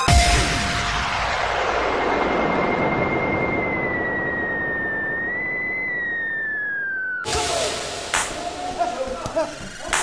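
The music's beat stops and leaves a long, fading electronic wash of noise with a thin whistling tone that slowly falls in pitch. It cuts off sharply about seven seconds in, and then a voice is heard.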